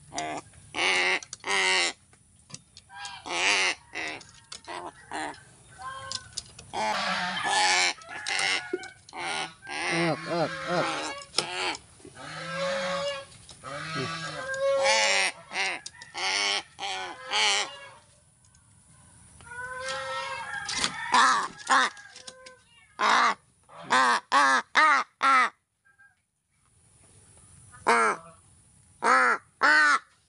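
Pet crows cawing over and over while begging to be fed from a hand. Longer runs of calls give way to a short lull, then a quick series of short caws.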